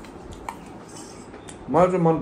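Metal spoon clinking and scraping lightly against a stainless steel bowl as food is scooped, a few faint clicks. A voice comes in near the end.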